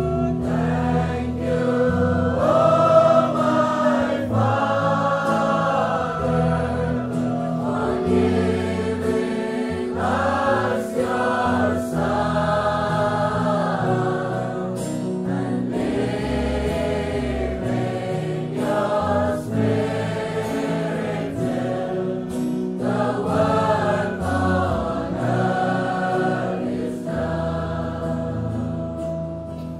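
Gospel worship music: a choir singing long, held phrases over a sustained accompaniment.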